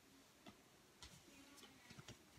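Near silence, with a few faint clicks from trading cards being handled.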